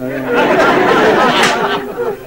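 Studio audience laughing, swelling quickly at the start and easing off toward the end.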